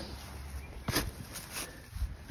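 A digging spade being pushed into grassy turf, giving a short sharp thud about a second in with a lighter knock just after.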